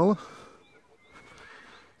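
A man's voice finishing a word, then faint outdoor quiet with a few thin, high bird calls.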